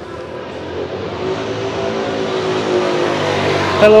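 Motor scooter engine approaching and passing close by, growing steadily louder over about three seconds.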